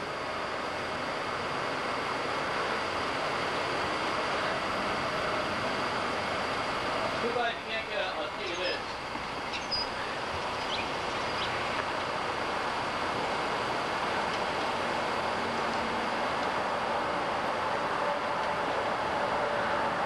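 Steady rushing road and wind noise of a slow-moving vehicle, with a brief murmur of voices about eight seconds in.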